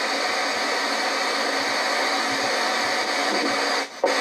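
Goodmans Quadro 900 portable radio hissing with static while tuned between stations; the hiss cuts off suddenly near the end as a station comes in.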